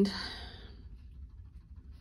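A woman's soft, breathy sigh trailing off in the first half second, then quiet room tone with a faint low hum.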